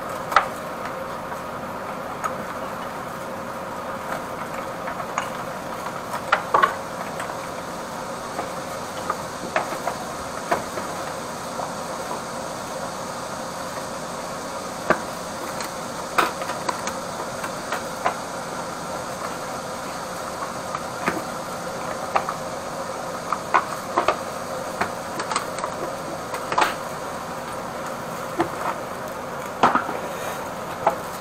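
Scattered clicks and knocks of gloved hands packing up and closing a small aluminium equipment case under a sink, over a steady machine hum.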